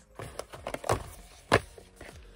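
Small cardboard product boxes being picked up and handled: a few light knocks and rustles, the loudest knock about a second and a half in.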